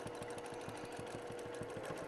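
Domestic sewing machine stitching steadily in free-motion quilting, a quiet, even run of rapid needle strokes.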